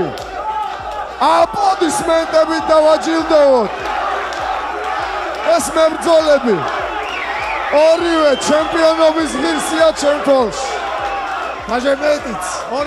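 A man's voice announcing through a handheld microphone in long, drawn-out phrases, over crowd hubbub in a large hall.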